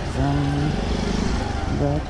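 Motorcycle engine idling steadily.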